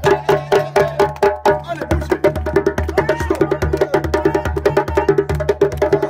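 Djembe-led music: hand-drum strokes at about three a second over a deep, steady bass.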